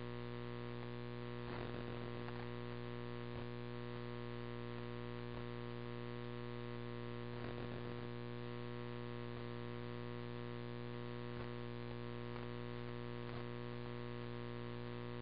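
Steady electrical hum with static from a radio scanner feed on an idle channel, between transmissions. A few faint clicks and two short crackles come about a second and a half in and again about seven and a half seconds in.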